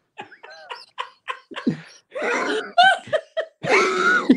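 People laughing in short repeated bursts, getting louder and overlapping from about two seconds in.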